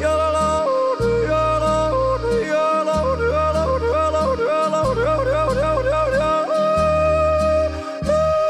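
A man yodeling, his voice flipping back and forth between chest and head voice with a quick run of leaps in the middle and a long held note near the end, over a folk-music accompaniment with a steady bass line.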